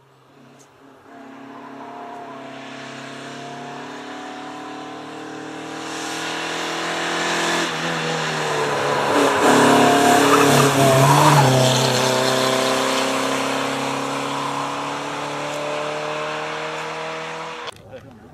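Renault 12 rally car's four-cylinder engine at full throttle, growing louder as it approaches, revs dipping about eight seconds in and picking up again as it passes at its loudest, then falling in pitch and fading as it pulls away. The sound cuts off suddenly near the end.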